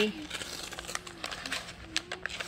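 Paper gift receipts and packaging crinkling and rustling as they are handled, in many small irregular crackles.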